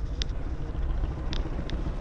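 Steady low outdoor rumble, with a few faint short ticks.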